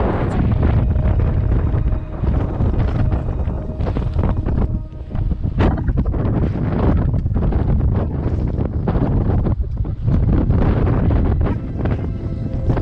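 Strong, gusting wind buffeting the camera's microphone, a loud, uneven rumble that swells and dips over the whole stretch.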